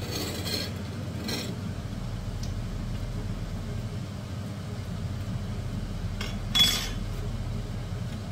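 Metal cutlery clinking against dishes a few times, the sharpest, loudest clink about six and a half seconds in, over a steady low hum.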